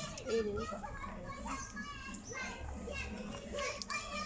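Several children's voices in the background, talking and calling over one another, none close to the microphone.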